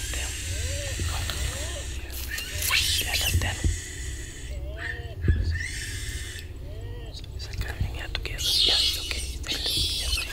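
Hushed whispering voices in the dark, in a few short breathy bursts. Several short calls that rise and then fall run under them, over a steady high hiss.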